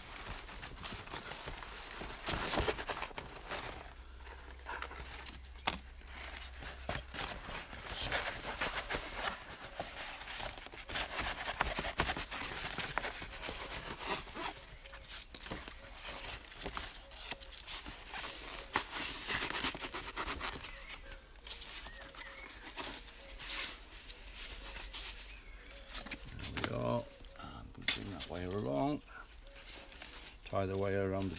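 Stiff plastic mesh damp-course sheet crinkling and rustling as it is handled and wrapped around a leek, with irregular small clicks and crackles.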